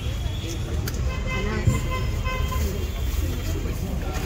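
Indistinct background voices over a steady low rumble of street noise, with a single sharp click about a second in.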